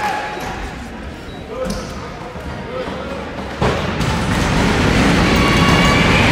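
Indoor gym crowd voices during a basketball free throw, then one sharp ball thud about three and a half seconds in. After it the crowd noise swells, as spectators react to the made point.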